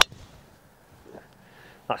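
A driver striking a golf ball off the tee: one sharp crack right at the start, just after the swish of the swing. The ball is caught high and toward the toe of the clubface. Faint outdoor background follows.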